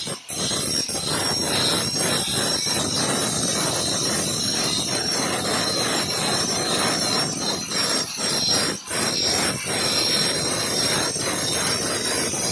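Handheld electric angle grinder with an abrasive disc grinding the edge of a granite stair tread to shape its molding: a loud, steady grinding that dips briefly twice, about a quarter second in and near nine seconds.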